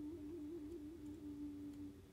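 The soft closing note of a chamber piece for shakuhachi, violin and cello: a single pure, quiet tone trills rapidly between two close pitches, then settles on one held pitch a little over a second in and begins to die away.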